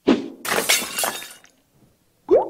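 Sound effect of a sharp hit followed by glass shattering, the breaking burst lasting about a second.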